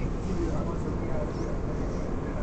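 Steady low rumble and hum inside an R188 subway car, with faint passenger voices in the background.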